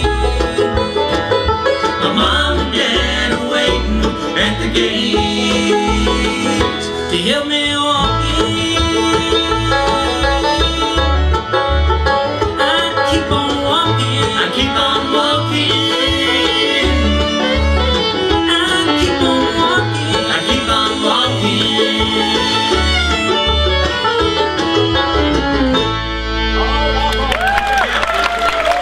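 Live bluegrass band playing: banjo, fiddle, mandolin, acoustic guitars and upright bass, with a steady plucked bass pulse underneath. Near the end the playing gives way to a held final sound as the song closes.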